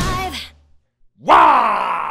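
A heavy metal song stops about half a second in. After a brief silence, a man lets out a loud, wordless groaning yell that falls in pitch.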